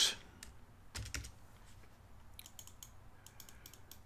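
Computer keyboard keystrokes and light clicks, scattered: a louder tap about a second in, then a quick run of faint taps near the end.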